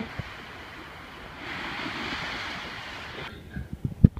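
Small waves breaking and washing up on a sand beach, the wash swelling in the middle and cutting off suddenly near the end, followed by a few short knocks.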